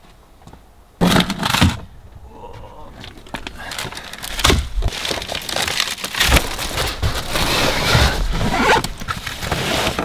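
Quiet inside a parked vehicle, then about a second in a sudden loud burst of noise as the rear hatch is opened. After that, irregular rustling, knocks and scrapes as a plastic-wrapped case of bottled water and a backpack are handled in the cargo area.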